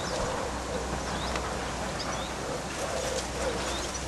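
Birds calling: a low cooing call heard twice, near the start and again about three seconds in, with short high chirps from smaller birds, over a steady low rumble.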